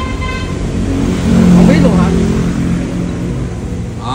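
A motor vehicle going past, its engine hum swelling to its loudest about a second and a half in and then easing off.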